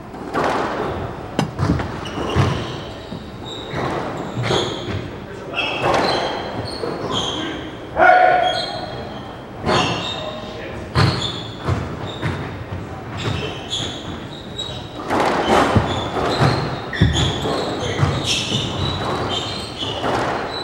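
Squash rally: a squash ball being struck by rackets and smacking off the court walls, with sharp impacts at an uneven pace, and sneakers squeaking on the hardwood court floor.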